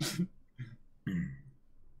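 A person briefly clears their throat about a second in, just after a short burst of laughter or voice at the very start.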